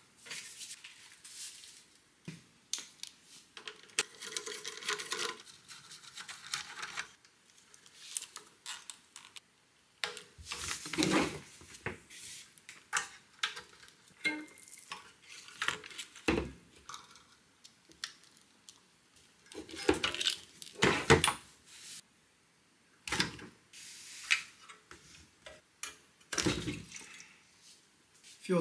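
Irregular clinks, knocks and rattles of hand tools and metal parts as the fuel tank is unbolted and lifted off a small portable generator, with short scraping stretches between the knocks.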